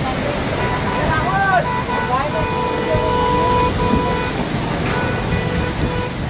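Storm wind and heavy rain making a steady rushing noise. A vehicle horn sounds for about a second and a half in the middle, followed by a short second toot.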